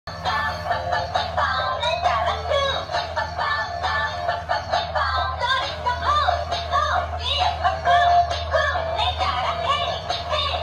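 Dancing cactus toy playing a song with singing through its small built-in speaker as it sways, over a steady low hum.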